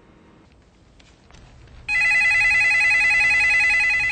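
Telephone ringing: one long, rapidly trilling electronic ring that starts about two seconds in and runs for a little over two seconds.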